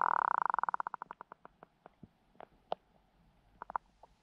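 An animal call: a fast series of pulses that slows down and fades away over about a second and a half, followed by a few scattered single clicks.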